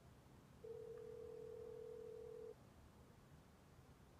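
A single steady electronic beep at one mid pitch, held for about two seconds, starting just under a second in, over a faint low hum.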